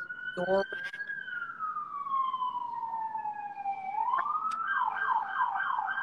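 Emergency vehicle siren wailing, slowly falling in pitch over about three seconds, then rising and switching to a fast warble near the end.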